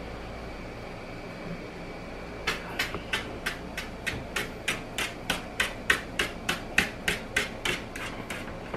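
A dog's hind paw tapping quickly on a tile floor, about four taps a second, starting a little over two seconds in. It is the scratch reflex, set off by someone scratching the dog's back.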